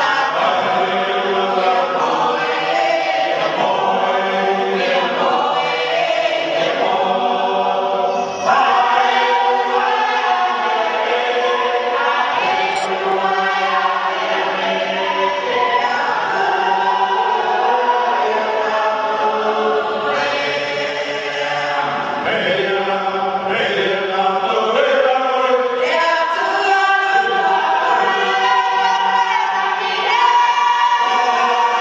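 A Cook Islands choir singing, many voices together in steady, sustained harmony.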